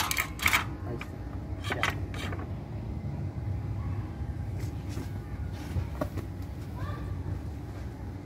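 Plastic spinal backboard scraping and knocking against pavement in a few short bursts as it is handled under a person being log-rolled, over a steady low background rumble and low voices.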